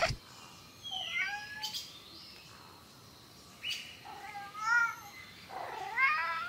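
Domestic cat meowing a few times, with short pauses between the calls: one about a second in and two more near the end.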